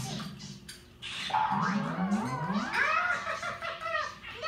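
A high voice making wordless calls. About a second and a half in, one long call slides steadily up in pitch, and short wavering calls follow it.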